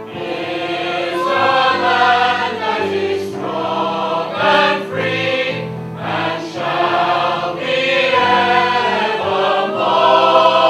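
A stage musical's full company singing as a choir in sustained chords, over steady low accompanying notes.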